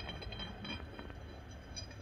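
Quiet workshop room tone with a low steady background and a few faint ticks.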